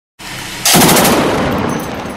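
A burst from a DShK 12.7 mm heavy machine gun: rapid shots starting about two-thirds of a second in, lasting about half a second, with a long echo rolling on after them.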